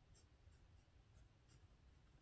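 Very faint scratching of a pen nib on notebook paper, a few short light strokes as a Chinese character is written.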